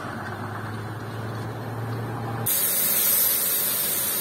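A steady low hum, then about two and a half seconds in a loud hiss of compressed air starts suddenly: a gravity-feed paint spray gun spraying.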